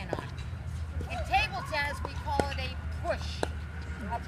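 A pickleball paddle striking a ball once, a sharp pock about two and a half seconds in, amid voices talking and a steady low background hum.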